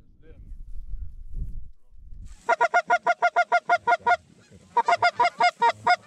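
Geese honking in a rapid, evenly spaced run of short high calls, about eight a second, starting about two seconds in. There is a brief pause, then a second run near the end. Low wind rumble fills the first two seconds.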